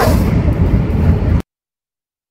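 Steady low road and engine rumble inside a truck's cab at highway speed, with a brief falling tone at the start. It cuts off abruptly about one and a half seconds in, leaving dead silence.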